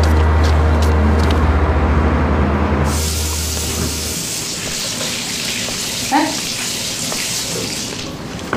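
Kitchen tap running water steadily into a sink, starting suddenly about three seconds in. It begins over the tail of background music with a deep, sustained low note that fades out about a second later.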